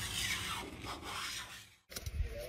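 Blade scraper scraping paint off window glass in a few strokes, fading and then cutting off suddenly just before the end.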